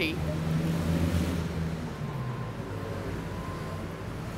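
Street traffic: a vehicle engine running close by gives a steady low hum, louder in the first couple of seconds and then easing, under the general noise of a busy street.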